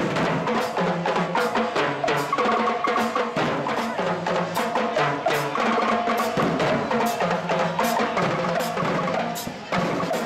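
A drum group playing a dense, driving rhythm on marching drums, with held pitched notes sounding underneath. The sound dips briefly about nine and a half seconds in.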